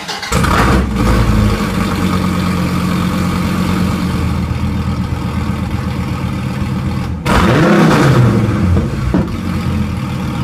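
Dodge Viper SRT's 8.4-litre V10 revs up loudly in the first second or so, then settles into a steady idle. About seven seconds in it gives one quick rev that rises and falls in pitch over about a second and a half before dropping back to idle.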